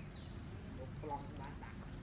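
Short animal calls: a brief high chirp that falls in pitch at the start and again about a second later, with a few lower calls around a second in, over a steady low background rumble.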